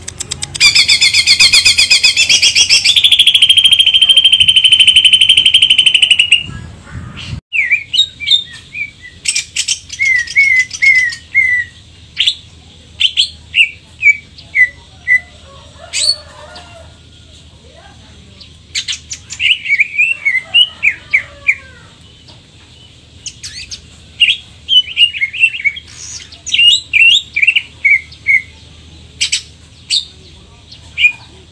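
Caged greater green leafbird (cucak ijo) singing. First comes a loud, rapid buzzing trill for about six seconds. After a break, quick runs of sharp, falling chirps follow one after another.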